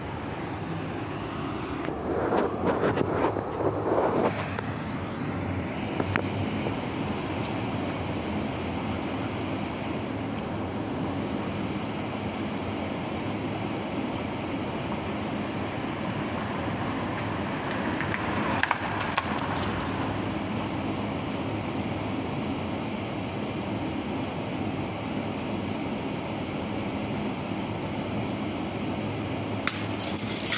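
Steady outdoor city background noise, like distant traffic, with louder swells about two to four seconds in and again near nineteen seconds, and a few sharp clicks.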